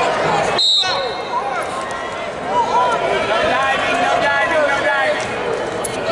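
Referee's whistle: one short, high blast a little under a second in, starting the bout. A gym crowd of spectators talking and shouting goes on throughout.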